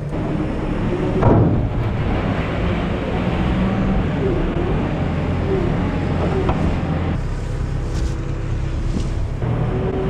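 Tractor engine running under a loud, noisy rush of wet cattle dung and straw sliding out of a tipping farm trailer, with a thump about a second in.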